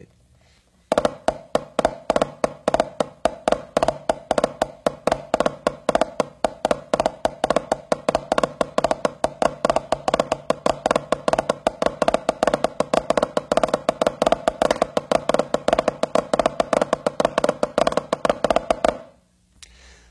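Drumsticks playing a paradiddle-diddle variation packed with extra flams and flammed ruffs: a fast, unbroken run of strokes with regular accents, starting about a second in and stopping shortly before the end.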